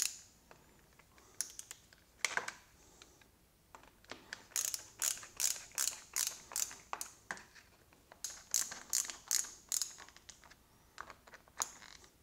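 A small hand ratchet clicking in two short runs of crisp clicks, a few a second, with a few single clicks between them, as a bolt at the left handlebar is tightened.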